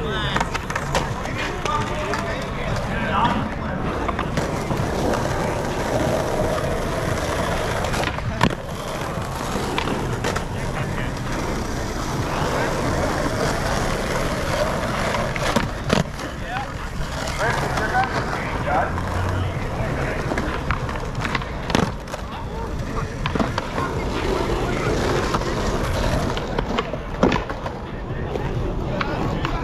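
Skateboard wheels rolling over asphalt, with several sharp clacks of boards popping, landing and slapping down on the ground.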